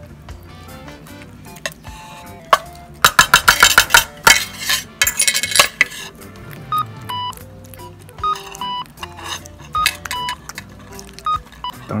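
Background music of short, high notes. About three seconds in, a quick run of loud metallic clinks lasts a couple of seconds: the opened tin of wet cat food knocking on a china plate as a cat eats from it.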